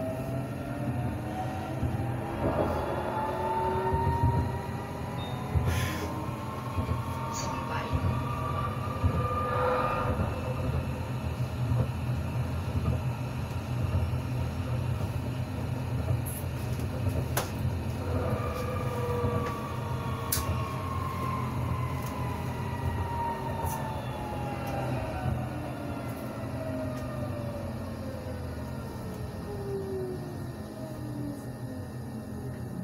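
Electric tram's traction drive whining as it pulls away, the whine rising in pitch over the first ten seconds, then falling again through the last third as the tram slows, over a steady running rumble with a few sharp clicks from the wheels on the track.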